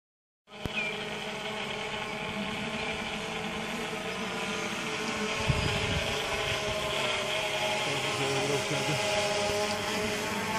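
Quadcopter drone's rotors buzzing steadily overhead: a chord of several whining tones that drift slightly in pitch as it flies, with a brief low rumble of wind about five and a half seconds in.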